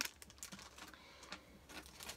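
Faint scattered clicks and light rustling as small items are handled and set down, a rummage through a gift bag of craft supplies.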